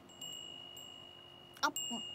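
Wind chime ringing with a clear, steady high note, struck again near the end: the sign that the breeze has picked up again.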